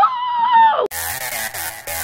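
A woman's high, excited 'woo!' whoop, rising in pitch and then held for under a second, cut off suddenly by electronic dance music with a steady beat.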